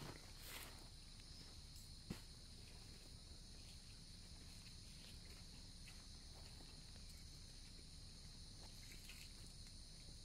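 Faint, steady, high-pitched insect drone, with a single sharp click about two seconds in.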